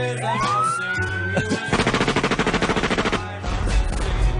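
Sound-effect siren winding up in pitch, then a rapid burst of machine-gun fire lasting about a second and a half, followed by a deep rumble, all over rock music.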